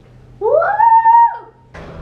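A young child's high-pitched "woo!" cheer, rising in pitch and then held for about a second before falling away.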